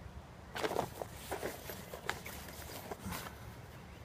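Small plastic food containers and packaging being handled on a stone bench: light knocks and rustles in several short clusters.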